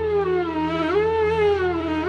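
Flute music: a single melodic line with sliding, bending notes over a low steady drone.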